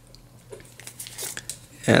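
Faint rustle and crinkle of a thin clear plastic protective film being peeled off a smartwatch screen and handled, with a few soft clicks. A man's voice starts right at the end.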